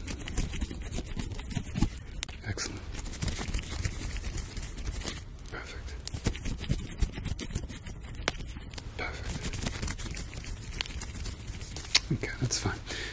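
Close-miked scratchy rubbing and crackling, made on one side of the listener as an ASMR hearing test. It breaks off briefly about five seconds in.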